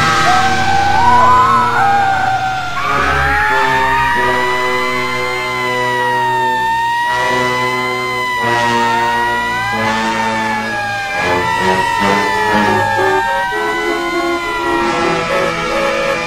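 A siren wailing, its pitch rising and falling slowly, over background music with held chords. Near the middle a second siren overlaps the first.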